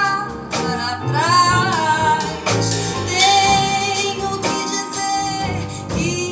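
A woman singing with a band of guitar, double bass, drums and piano. Her voice glides up into several notes, then holds one long note through the middle.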